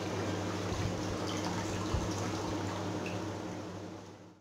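Milk pouring from a plastic packet into a nonstick pan, a steady splashing that tapers off toward the end.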